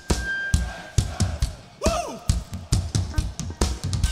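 Punk rock band playing live, with a steady beat of heavy drum hits under guitar and bass, in a pause between sung lines. A single voice shouts "Woo!" just before the two-second mark.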